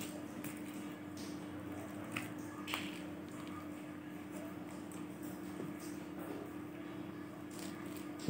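Mandarin orange being peeled and pulled apart by hand: soft tearing and small crackles of peel and pith, with two slightly sharper snaps about two and three seconds in, over a steady low hum.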